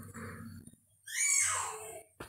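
A man's single audible breath close to a microphone, about a second long and sliding downward, in the second half after a brief near-silent gap.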